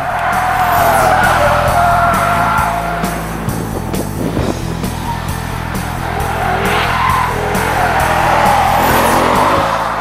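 Ford Mustang GT's 5.0 V8 driven hard through corners on a track, its tyres squealing in two long stretches, in the first few seconds and again from the middle to near the end. Background music with a steady beat runs underneath.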